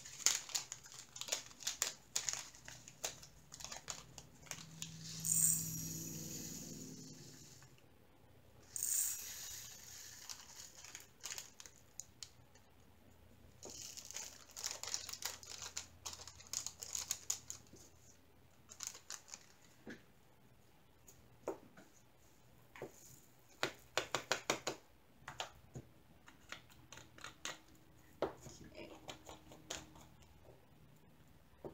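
Plastic zip bags of diamond painting drills crinkling as they are opened and handled, with many small clicks and patters as the little drills are tipped into a tray and into small plastic storage pots.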